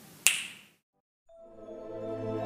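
A single sharp finger snap, ringing off briefly. After a short silence, music fades in with sustained low notes.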